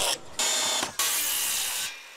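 Circular saw cutting through a wooden board, in two bursts, the second longer.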